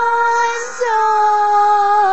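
A girl singing two long held notes, the second lower and starting just under a second in.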